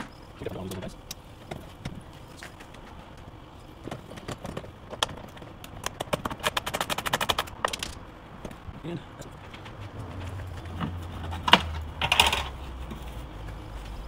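Clicks and knocks from unbolting and working loose a jet ski's plastic side panel, with a rapid run of about a dozen clicks a second in the middle and two sharp knocks near the end as the panel comes free. A low rumble comes in over the last few seconds.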